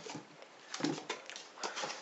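Cardboard boxes holding drinking glasses being handled on a table: a few light taps, scrapes and rustles as one box is set down and the next picked up.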